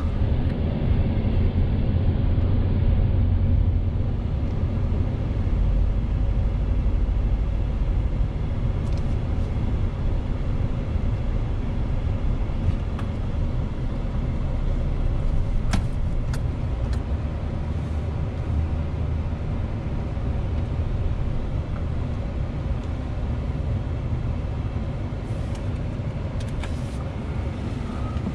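Road and engine noise inside a moving truck's cabin: a steady low rumble, heavier for the first several seconds and then easing, with a few faint clicks.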